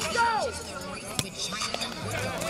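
Players shouting from the sideline of a football field, voices rising and falling in the first half-second, then a single sharp knock about a second in.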